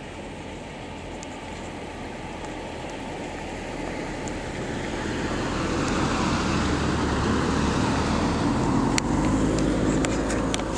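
Noise of a road vehicle, steady and growing gradually louder over several seconds, loudest near the end.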